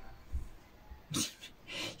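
Two short breath sounds, one a little past the middle and one just before the end, in an otherwise quiet pause.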